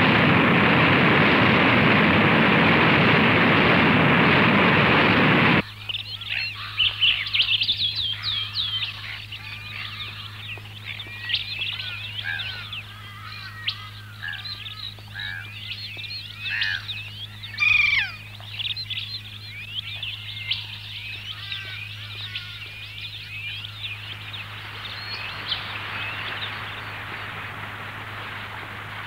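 A loud, steady rush of surf breaking against rocks cuts off abruptly about five seconds in. A busy chorus of tropical bird calls and chirps follows, and a softer rushing noise returns near the end.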